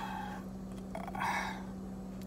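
A man's breathy exhale about a second in, over a steady low hum inside a car.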